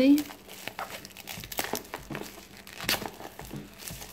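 Clear plastic shrink-wrap crinkling in irregular crackles as hands work it off a cardboard paint-set box.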